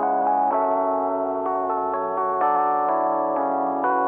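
Software Rhodes electric piano (Keyscape) playing a slow chord melody, pitched up and processed with an ambient reverb, a VHS effect and a high cut, so it sounds worn and dull with no top end. The chords change about once a second.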